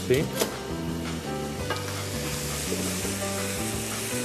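Cassava, cheese, egg and bacon sizzling in a hot frying pan while a wooden spoon stirs them, the egg setting in the heat. Steady background music plays underneath.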